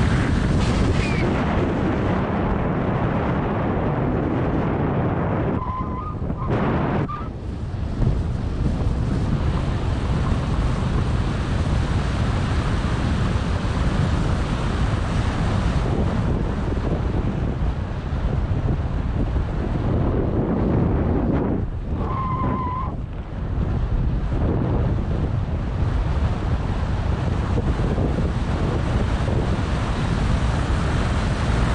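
Steady rushing of wind on the microphone as a mountain bike rolls fast down a paved lane. The rush eases twice, about six and twenty-two seconds in, each time with a brief squeak.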